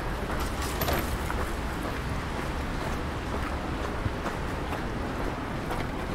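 Steady outdoor city street ambience: a continuous low rumble of distant road traffic with a few faint ticks and clicks.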